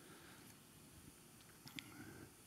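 Near silence: room tone during a pause in a talk, with two faint short ticks near the end.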